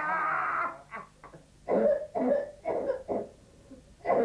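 A long voiced wail ends under a second in, then a string of about six short, separate coughs follows over the next two seconds: staged mock coughing.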